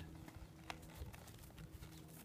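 Faint hoof steps of a horse moving its feet on dry dirt as it turns, with a light click about two thirds of a second in.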